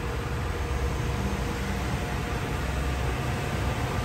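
Steady low machinery hum with a faint, even whine, unchanging throughout.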